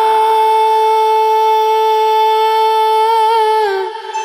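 Background music: a singer holds one long steady note, which dips and fades just before the end.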